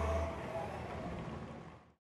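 A vehicle's low engine rumble with road noise. It weakens a little after the start and fades away just before two seconds.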